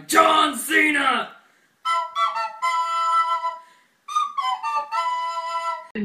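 A voice calls out briefly at the start, then a flute-like woodwind instrument plays held notes in two short phrases with a brief gap between them.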